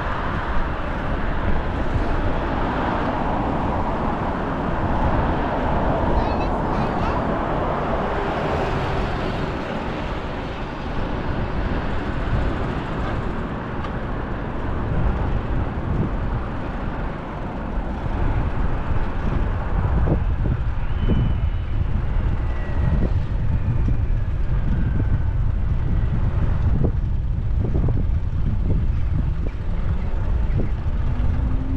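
Wind rumbling on the action camera's microphone as the bicycle rides along, over the steady noise of car traffic on the multi-lane road alongside. The traffic noise is fuller in roughly the first third, then the low wind rumble dominates.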